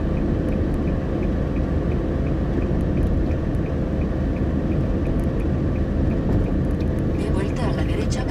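Steady road and engine rumble heard inside a moving car, with a row of faint, regular high ticks about five a second.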